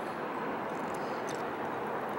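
Steady, even outdoor background noise with no distinct sound standing out, the kind of rush a breeze and distant traffic make together.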